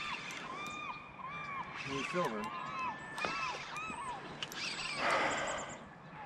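Several birds calling over and over, short rising-and-falling calls overlapping one another. A brief burst of splashing comes about five seconds in as a hooked coho salmon is brought into the shallows for netting.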